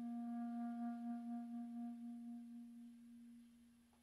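Clarinet holding one long low note that slowly fades away, its upper overtones dying out first, until the note is almost gone by the end.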